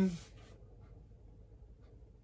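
A man's voice finishing a word, then a pause of quiet room tone with a few faint ticks.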